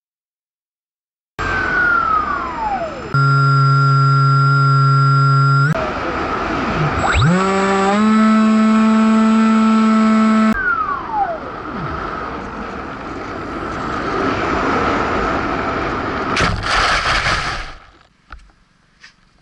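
Electric motor of a Bixler RC foam plane heard through its onboard camera: a whine at steady pitches that jump abruptly, sliding down near the start and about ten seconds in, and up about seven seconds in, with the throttle. Near the end a loud, rough noise lasting about a second as the plane comes down in the grass.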